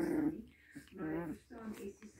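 Pomeranian puppies vocalising as they wrestle in play: short whiny growls in two bursts, one at the start and one about a second in.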